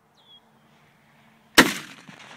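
A Saiga short-barrelled semi-automatic shotgun fires a 3.5-inch 00 buckshot shell: one loud shot about one and a half seconds in, its ring dying away.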